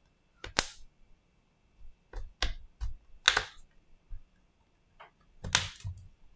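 Plastic opening pick worked along the seam of a Huawei MediaPad T5 tablet's casing, with a series of sharp, irregular clicks and snaps as the plastic clips let go. The loudest snaps come about half a second, three seconds and five and a half seconds in.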